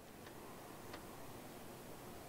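Faint room tone with a light tick or two of a stylus tip tapping on a tablet screen.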